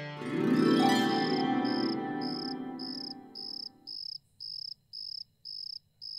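A cricket chirping steadily, high and evenly spaced at about two chirps a second. Under it a sustained keyboard chord swells and then fades out over the first four seconds.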